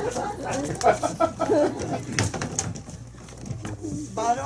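Wordless vocal sounds from a person, with scattered short knocks as performers get up from wooden chairs on a stage.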